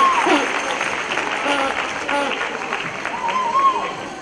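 Audience applauding in a large hall, with a few shouted calls over the clapping; the applause slowly dies down.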